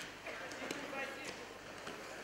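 Thuds and slaps of wrestlers' bodies and feet on the wrestling mat during a takedown, a few sharp knocks over a noisy arena background with shouting voices.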